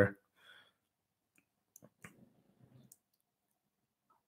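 A few faint, sharp clicks around two to three seconds in, with a faint low murmur under them, in an otherwise quiet small room, just after a man's word ends.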